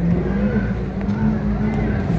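Car engine held at high revs at a steady pitch, stepping up slightly about a quarter second in.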